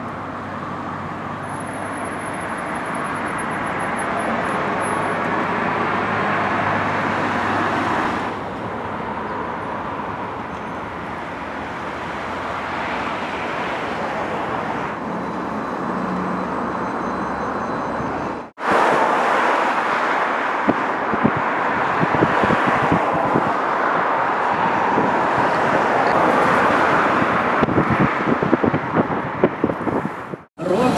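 Outdoor road traffic noise: a steady rush of passing vehicles. It breaks off abruptly twice, about 8 and 18 seconds in, and the last stretch is louder with many short knocks.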